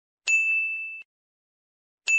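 A single high 'ding' sound effect, a bell-like tone that rings out and fades within about a second.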